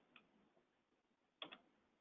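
Near silence in a pause of speech, with one faint, short click about one and a half seconds in.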